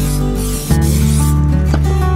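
Aerosol spray can hissing in a few short bursts during the first half, over acoustic guitar music.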